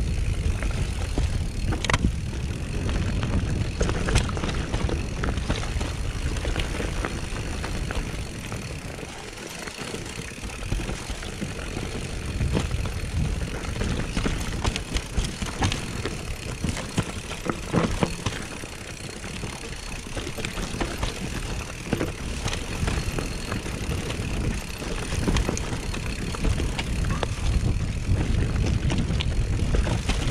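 Mountain bike riding down a rough dirt singletrack: a constant rumble of tyres and wind on the microphone, with frequent sharp knocks and rattles from the bike over roots and stones. It eases off briefly twice, then picks up again.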